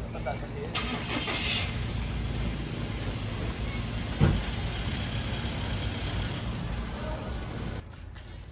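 A vehicle engine idling steadily, a low rumble throughout. A brief hiss comes about a second in, and a single thump comes about four seconds in.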